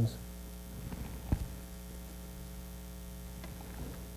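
Steady electrical mains hum from the sound system, with a single brief click about a third of the way in.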